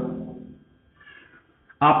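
A whiteboard marker squeaks faintly and briefly about a second in as a small box is drawn on the board, followed by a light click. A man's voice trails off at the start and resumes near the end.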